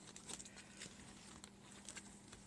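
Near silence with a few faint clicks and rustles of paper and cardstock being handled, over a faint steady hum.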